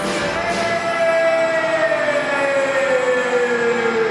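Live band music from strings and keyboards, without vocals: one long held tone slides slowly and smoothly down in pitch over about three seconds, over steady sustained chords.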